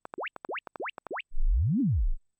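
Room-calibration test signal from Sound ID Reference played through a studio monitor speaker. First comes a quick run of short rising chirps with clicks between them, then a louder low sweep that rises and falls back down. These are the measurement tones of the speaker calibration in progress.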